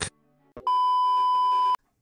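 A single steady electronic beep, one high tone held for about a second and cut off sharply.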